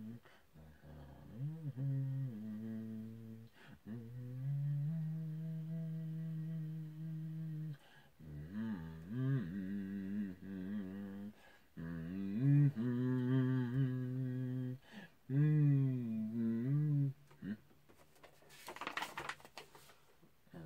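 A man humming a slow melody without words, holding long notes and sliding between pitches, with short breaks between phrases. A brief rustling noise comes near the end.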